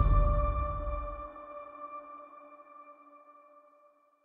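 The decaying tail of a logo-intro sound effect: a low rumble fades out within the first two seconds while a ringing tone of several steady pitches dies away slowly, gone just before the end.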